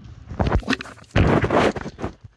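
Handling noise: the camera being moved and rubbed about under the sink, with a short scrape about half a second in and a louder, longer rustle in the second half.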